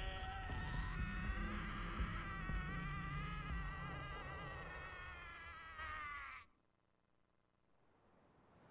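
A wavering, insect-like buzzing whine over a low rumble, from the anime's sound track; it cuts off suddenly about six and a half seconds in.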